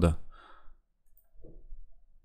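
A man's voice finishing a word, then quiet room tone with a faint breath and a brief faint low sound.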